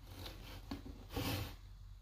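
Digital calipers being handled against a freshly turned metal part on a lathe, with a soft rubbing scrape about a second in, over a faint steady hum.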